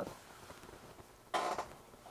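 Quiet room tone, broken once by a short soft hiss about a second and a half in.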